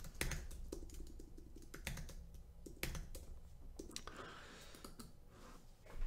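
Faint typing on a computer keyboard: irregular key clicks as a folder name is typed in.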